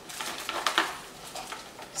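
Light clicks and rustles of a small sunglasses box being handled as its contents are taken out, with a cluster of small clicks about half a second in.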